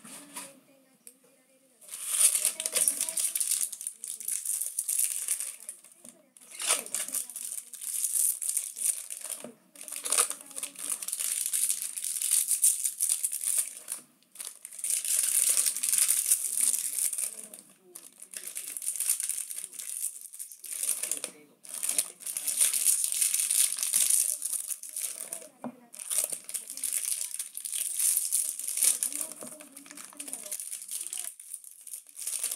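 Foil wrappers of baseball card packs crinkling as they are torn open and pulled apart by hand, in about seven bursts of a few seconds each with short pauses between.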